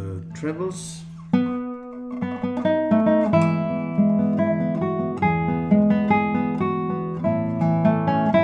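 Radially braced, spruce-topped 2023 Robin Moyes classical guitar played fingerstyle: a sharp plucked chord a little over a second in, then a flowing line of ringing treble notes over sustained basses.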